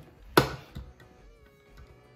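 Handheld manual can opener being cranked one-handed around a steel can: one sharp click about half a second in, then a few faint ticks.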